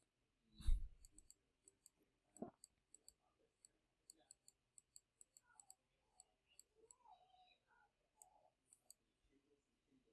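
Faint computer mouse clicks, scattered irregularly, with a soft thump about a second in.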